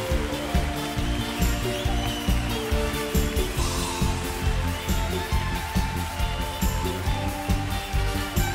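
Live band playing an upbeat trot instrumental passage without vocals: a steady drum beat under sustained keyboard lines.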